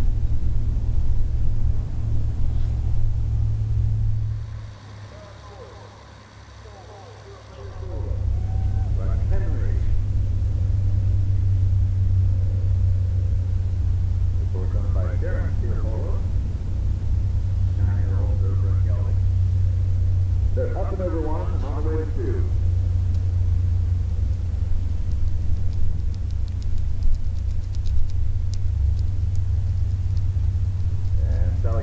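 Low rumble of wind buffeting the microphone, which drops away for about three seconds near the start and then returns. Snatches of faint, distant speech come and go over it.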